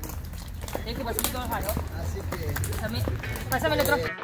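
Indistinct chatter of several young women's voices talking and calling out at once, with a low steady rumble underneath.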